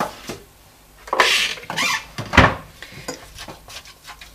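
Kitchen handling noises: a brief rustle about a second in, then a single solid knock near the middle, like a container or utensil set down hard on the worktop, followed by a few light clicks.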